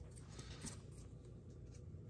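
Faint, soft handling of a trading card: a few small ticks and light rubbing as it is picked up and held out, over quiet room tone.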